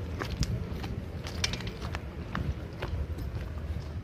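Footsteps crunching on gravel, irregular sharp crunches over a low rumble of wind on the microphone.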